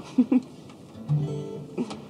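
An acoustic guitar being strummed: a chord rings out for about half a second, a little after the middle, and a short strum or click follows near the end.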